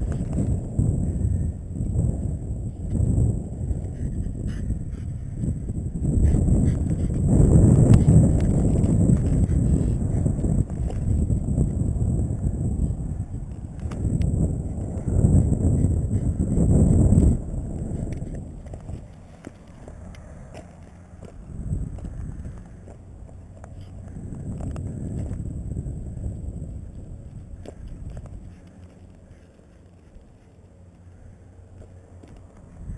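Footsteps crunching on loose desert rock, with wind rumbling on the microphone in uneven gusts. The gusts are loudest about a quarter and about halfway through, then ease off toward the end.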